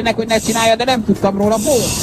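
A person talking, with a steady hiss behind the voice.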